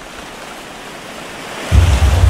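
Rushing sea surf and wind, growing steadily louder, then a sudden deep boom near the end that carries on as a low rumble.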